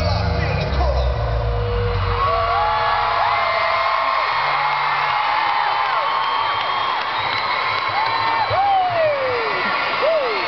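An arena crowd screaming and cheering at the end of a live pop-rock song, with many high, wavering shrieks. The band's last held note and bass fade out over the first few seconds.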